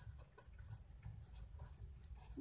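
Faint scratching of a felt-tip marker writing a word on paper, in short strokes over a low steady hum.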